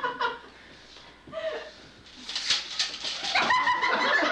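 A lull with a brief low voiced sound, then a burst of laughter followed by talking resumes near the end.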